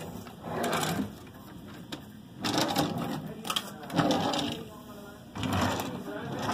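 Indistinct talking, mixed with wooden cabin drawers being slid open and shut, with a few sharp knocks about three and a half to four seconds in.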